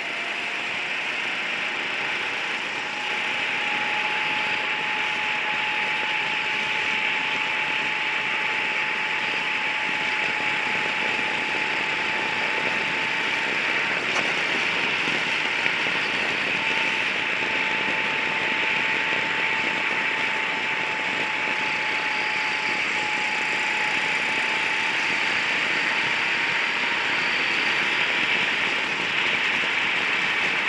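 Gas-powered racing kart engine heard from on board, its pitch rising over the first few seconds as the kart speeds up and then holding nearly steady at high revs, with a broad rush of wind noise over the microphone.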